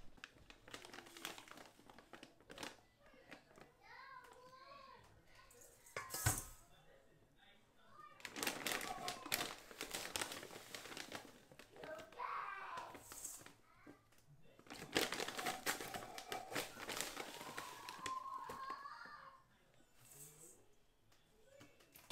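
Large plastic bag of Epsom salt crinkling and rustling as a stainless steel measuring cup is dug in and scooped full of salt, in two long stretches, with a sharp knock about six seconds in. Faint voices in the background.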